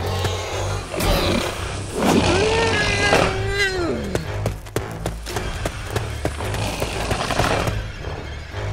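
Background action music with a dinosaur call sound effect: one long cry starting about two seconds in, holding its pitch, then dropping away just after four seconds, among noisy bursts.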